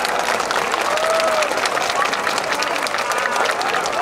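Audience applauding with dense, steady clapping, with a few voices calling out over it.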